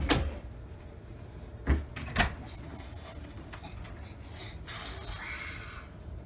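A few sharp knocks: a loud one at the start and two more about two seconds in. A brief rustle comes near the end.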